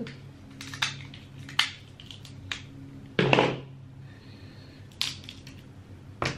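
Close-up sounds of cooked king crab legs being picked apart and eaten: sharp clicks and cracks of shell, with one louder crunch about three seconds in.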